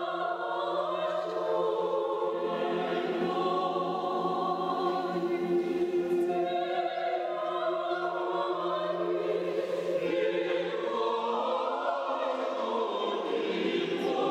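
Mixed choir of men and women singing Orthodox church music a cappella in sustained chords. Near the end the low bass note drops out and the upper voices swell.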